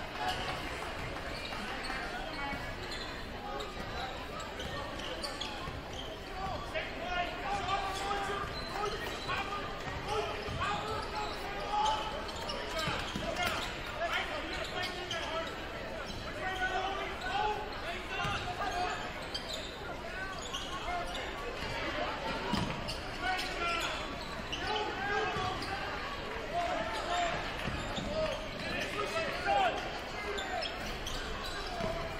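Basketball dribbled and bouncing on a hardwood gym floor during live play, over the indistinct chatter of the crowd.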